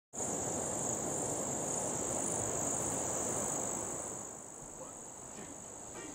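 Insect chorus: a steady high-pitched buzz that runs unbroken. A low rushing noise sits under it, louder for the first four seconds and then dropping away.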